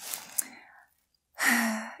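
A woman breathing in a pause between sentences: a breathy out-breath fading away, a moment of dead silence, then a loud, sharp in-breath with a little voice in it about one and a half seconds in, just before she speaks again.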